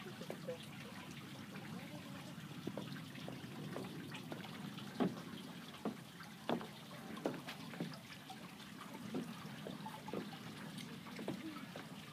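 Pond water splashing and dripping around a slowly swimming person: soft, irregular small splashes and drips, the sharpest about five and six and a half seconds in.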